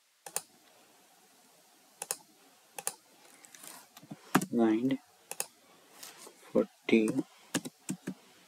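Computer keyboard keystrokes and mouse clicks entering drawing commands: scattered, irregular single clicks, with a couple of short spoken words between them.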